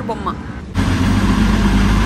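City bus engine running, heard inside the cabin: a loud steady low drone that starts abruptly about three-quarters of a second in.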